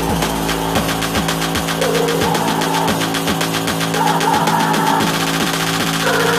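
Bass-boosted electronic dance music with a steady driving beat and repeated downward-sliding bass notes. A higher synth melody comes in about two seconds in.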